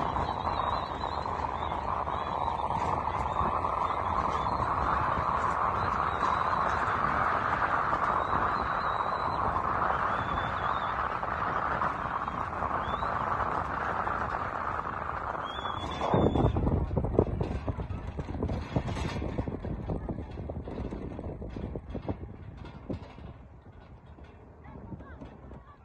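A crowd of spectators shouting and cheering as racehorses gallop past, a steady wash of many voices. About two-thirds of the way in it cuts off, and a low rumble of wind on the microphone with a few knocks takes over and fades toward the end.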